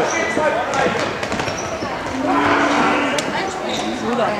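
Voices of people shouting in a sports hall, with one long drawn-out call about two seconds in, and a sharp knock of a ball being kicked near the end.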